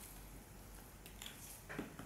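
Faint rustle of a paper writing pad being handled and shifted by a gloved hand, with a short sharper knock a little under two seconds in.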